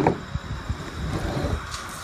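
Light handling noise: a plastic dog water bottle and its parts being moved about on a table, with faint soft knocks over a low, even background rumble.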